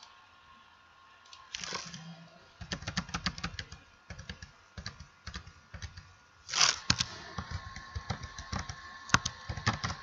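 Computer keyboard typing in quick runs of keystrokes, with a short pause in the middle. Two brief bursts of noise stand out, one about two seconds in and a louder one just past the middle.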